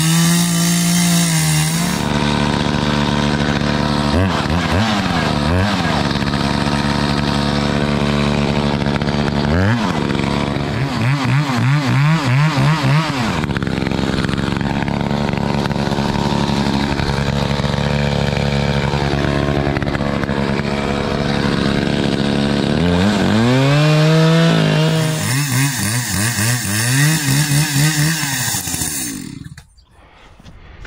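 Gas chainsaw cutting into the trunk of a dead black cherry. The engine pitch repeatedly drops under load and climbs back up as the throttle is worked. The saw cuts off near the end.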